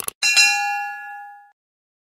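Subscribe-bell notification sound effect: a short click, then a bright bell ding that rings out and fades within about a second and a half.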